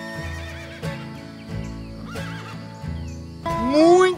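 Country-style background music, with a horse whinnying loudly near the end in long arching, wavering calls, and hoof clip-clops.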